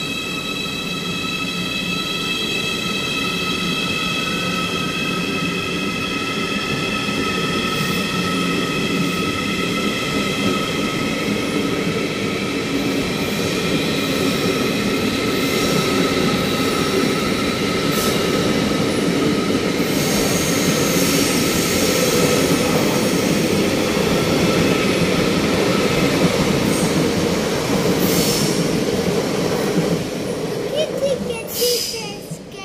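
ICE high-speed electric train pulling out along the platform, its carriages rolling past with a dense rumble and several steady high whining tones, some of them rising in pitch, getting slightly louder. A few sharp clacks come in the later part.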